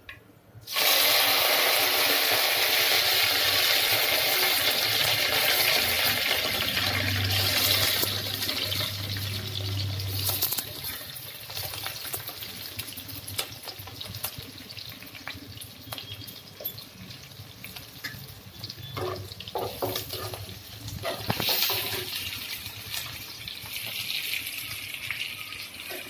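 Sliced onions and green chillies hitting hot oil in a non-stick kadai: a loud sizzle starts suddenly about a second in and slowly dies down. Scattered clicks of a metal spatula against the pan follow as the onions are stirred.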